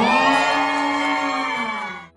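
A woman's long, excited squeal into a microphone, held on one pitch, dipping slightly and cutting off suddenly at the end.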